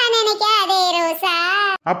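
High-pitched, sped-up cartoon voice in a drawn-out sing-song with a wavering pitch, breaking off just before the end.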